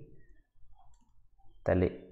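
A quiet pause with a few faint clicks from the writing input while handwriting is added on the screen, then a voice starts speaking near the end.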